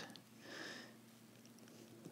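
Near silence: room tone, with a faint short breath about half a second in.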